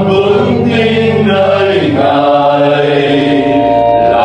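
Church choir singing a Vietnamese Catholic hymn in long held notes, moving to a new chord about halfway through.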